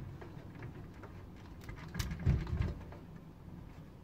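Faint clicks and light knocks from parts being handled inside a metal PC case, with a short, louder dull low knocking about two seconds in.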